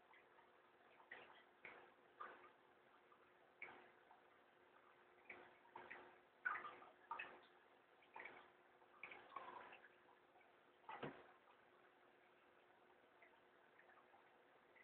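Near silence broken by about a dozen faint, short clicks and rustles at uneven intervals, which stop about three-quarters of the way through.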